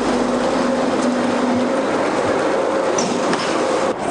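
Steady, even rumble and hiss of running machinery with a low steady hum, like vehicle or aircraft noise.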